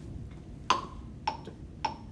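Three evenly spaced metronome-style clicks, about one every 0.57 s, matching a tempo of 105 beats per minute: the count-in click that opens the backing track.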